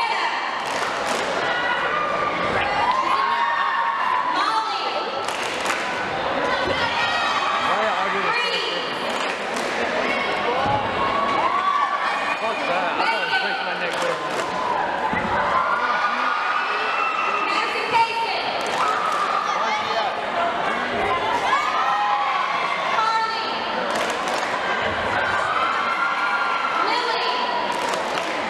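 A group of girls' voices shouting and chanting a cheer, echoing in a gym, with scattered claps and thumps.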